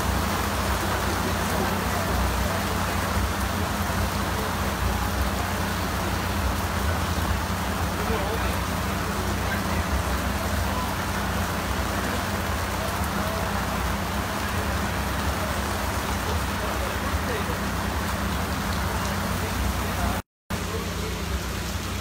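Heavy rain pouring down, a steady dense hiss of rain falling on tent canopies and wet pavement, with a steady low hum underneath.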